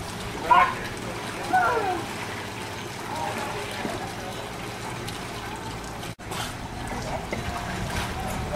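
Light water splashing and sloshing as a small child paddles in a swimming pool. Two short, high voice calls come in the first two seconds, and the sound drops out for an instant about six seconds in.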